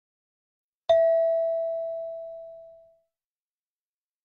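A single chime tone struck once about a second in, a clear bell-like ding that rings and fades away over about two seconds. It marks the move to the next question of the listening test.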